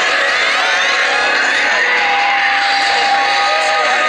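Yosakoi dance music with the dancers shouting calls and whoops over it, many voices overlapping. A long held note enters about two seconds in.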